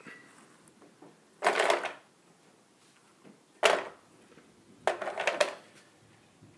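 Bio-Chem Stars filter media rattling and clattering against the plastic media basket as they are pushed into its chamber, in three bursts: about a second and a half in, a sharp clack near the middle, and again near the end.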